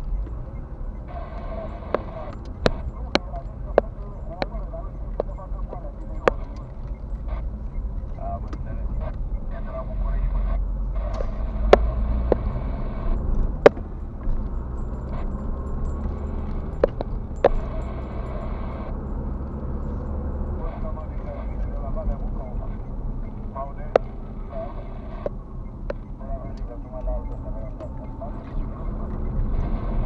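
Inside a moving car: a steady low road and engine rumble that swells for a stretch in the middle, broken by scattered sharp clicks and rattles from the cabin.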